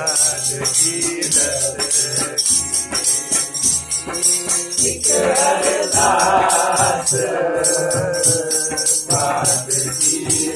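Sikh shabad kirtan: a young boy singing to his own harmonium, with tabla strokes and a steady jingling hand percussion keeping the beat. The singing swells about halfway through and comes back near the end.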